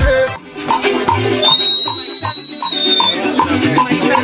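Parang music: strummed strings and shaken maracas over a steady beat. A high steady tone is held for about a second and a half in the middle, and the music dips briefly just after the start.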